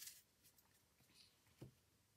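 Near silence, with faint handling of a deck of playing cards and one soft, short tap about one and a half seconds in.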